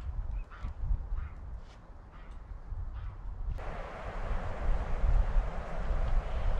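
Short, scattered bird calls of the waterfowl kind over a low rumble of wind on the microphone. About three and a half seconds in, this gives way abruptly to a louder, steady rush of wind noise.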